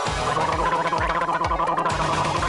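A person gargling, a steady warbling gargle, over background music with a regular beat.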